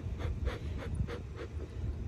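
Bee smoker bellows being pumped by hand, pushing quick airy puffs through the smouldering pine-shaving fuel, about four puffs a second.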